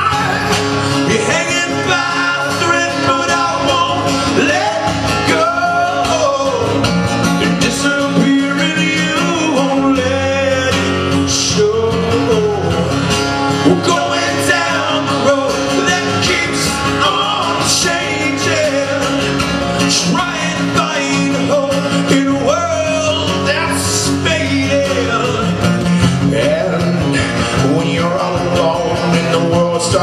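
Live acoustic rock song: a man singing lead over an acoustic guitar, with no drums.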